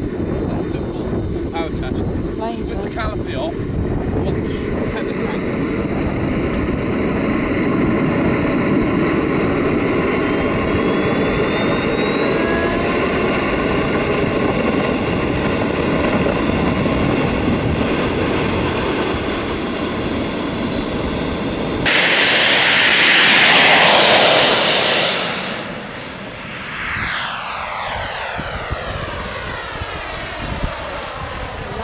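Model jet turbine engine of a radio-controlled jet running with a high whine whose pitch climbs and then eases back. About two-thirds of the way through, the sound jumps abruptly to a much louder rush of the jet under power. That rush fades within a few seconds, leaving a whine that falls in pitch as the jet moves away.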